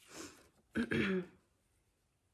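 A woman takes a breath and then clears her throat once with a short voiced sound.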